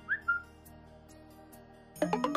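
A short whistle-like phone message notification tone at the very start: a quick rising chirp followed by a brief held note. Soft background music continues underneath.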